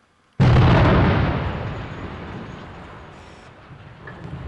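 Demolition blast of explosive charges at the base of a tall industrial chimney: a sudden loud bang about half a second in, with a deep rumble that fades over about three seconds.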